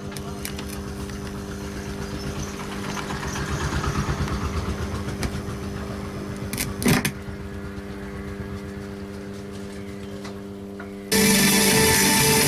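Microlab subwoofer speaker system putting out a steady electrical hum and buzz through its speakers, the noise fault being repaired, with a sharp knock about seven seconds in as the input jack is handled. About eleven seconds in, music from a connected phone starts loudly over the hum.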